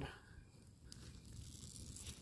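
Faint sound of a brush-and-pine-stump fire burning: a low rumble with one faint crackle about a second in.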